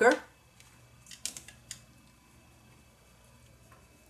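A few light clicks and taps a little over a second in, from handling watercolour painting materials: brush, paint tin and palette. The rest is quiet room tone.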